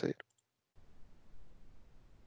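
A spoken word ends, then come two faint clicks and a short dead gap. After that there is only a faint low hum and hiss of microphone room noise.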